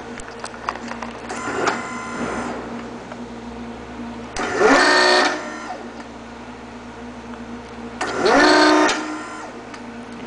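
REXA electro-hydraulic actuator's servo motor and pump whining in three short bursts, each about a second long, as the hydraulic cylinder strokes to a new set point. The first burst is fainter, and the pitch climbs at the start of the second and third.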